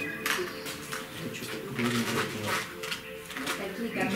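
Background music with steady held notes, with indistinct voices talking over it.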